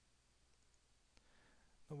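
Two faint computer mouse clicks about a second apart over near silence.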